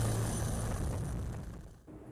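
T129 ATAK attack helicopter hovering: a steady rotor drone with a high, thin turbine whine that stops about a second in. The whole sound fades away near the end.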